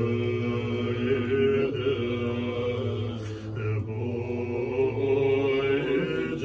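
Tibetan Buddhist monks chanting prayers together in low voices, a steady droning recitation on long held pitches that shift only slowly.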